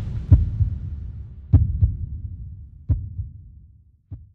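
Intro sound effect: deep heartbeat-like thumps over a low rumble, one of them doubled, coming about once a second and dying away as the rumble fades.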